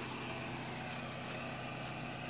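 A steady low mechanical hum with an even hiss, unchanging throughout.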